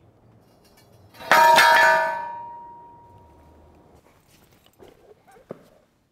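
A single loud metallic clang, about a second in, ringing on with a bell-like tone that dies away over two to three seconds. Faint knocks and one sharp click follow near the end.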